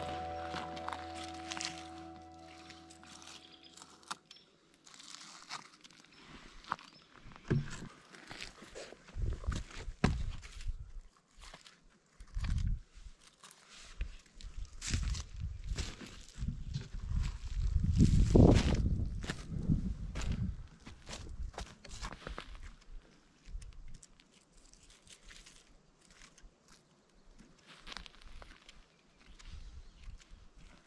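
Background music fades out in the first few seconds, then footsteps and rustling on dry forest-floor litter with scattered sharp clicks and crackles. About halfway through there is a louder stretch of low rumbling noise.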